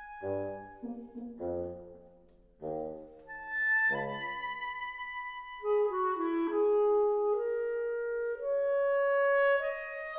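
Wind quintet of flute, oboe, clarinet, horn and bassoon playing classical chamber music. The first few seconds are short detached chords over low bassoon notes, with a brief dip between them. Then come longer held notes, one middle voice climbing step by step toward the end.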